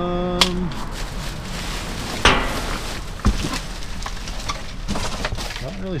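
Rummaging through trash in a dumpster: rustling among bags and cardboard, with a few sharp knocks, the loudest about two seconds in.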